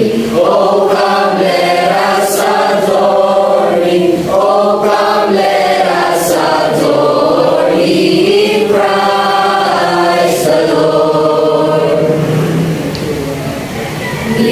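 A mixed choir of young men and women singing together, holding long notes, with a brief drop in loudness near the end.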